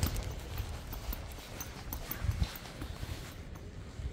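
Footsteps walking on a polished stone floor.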